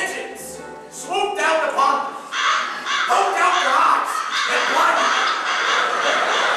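Actresses playing the stepsisters shrieking in rising, overlapping high cries as birds peck at their eyes, the cries thickening into a dense clamour after about two seconds.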